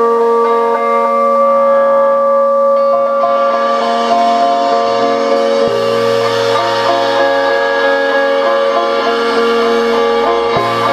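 Live band music: long held, ringing guitar chords sustained as a drone, with a deep bass note coming in about halfway through.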